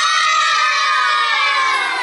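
A group of young children shouting a line together in unison: one long, drawn-out call that holds steady and then slides down in pitch near the end.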